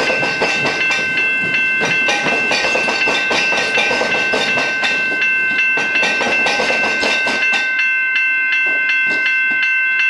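Melbourne Metro suburban electric train running past a level crossing, its wheels clacking regularly over the rail joints, while the crossing's alarm bells ring steadily throughout. The train noise falls away about eight seconds in, leaving the bells ringing.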